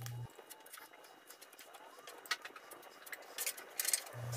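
Faint, sparse clicks and light scraping from a plastic spreader working polyester glazing putty.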